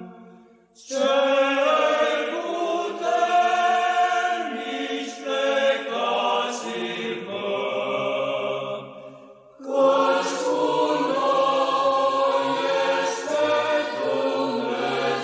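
Choral chant, sung voices holding sustained lines in phrases, with a short break about a second in and another about nine and a half seconds in.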